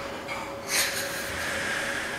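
A person blowing into a rubber balloon by mouth: a sharp puff about two-thirds of a second in, then a steady breathy hiss.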